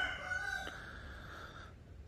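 A faint, drawn-out bird call that fades out a little before the end.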